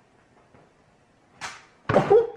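A kitten leaping from a shelf at a wall: a quick swish about one and a half seconds in, then a loud knock with a brief ringing note just before the end.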